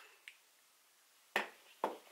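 Two sharp clicks about half a second apart, near the end of an otherwise quiet moment.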